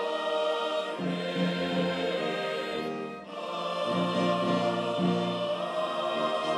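Choral music with held, sustained chords, the harmony shifting about a second in and again near four seconds.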